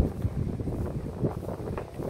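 Wind buffeting a smartphone's microphone: an uneven low rumble that rises and falls.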